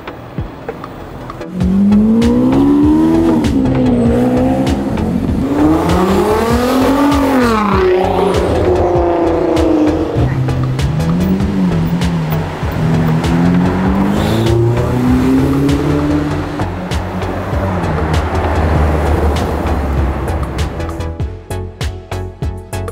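Ferrari SF90's twin-turbo V8 revving hard, its pitch climbing and dropping several times, then settling to a low drone near the end.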